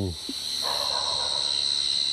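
Crickets trilling in a steady, high, continuous night chorus. From about half a second in, a soft noise lies underneath.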